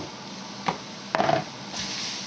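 Sliced onions frying in a dark roux in a skillet, a soft steady sizzle, with a short knock about two-thirds of a second in and a brief clatter of spoon scrapes and knocks against the pan a little after one second.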